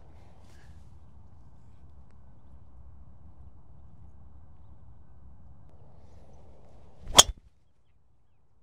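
A driver striking a golf ball off the tee: one sharp, loud crack about seven seconds in, after several seconds of only faint background noise.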